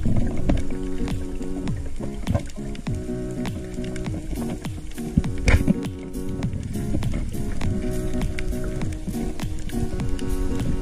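Background music with held chords that change every second or so, overlaid with many short clicks.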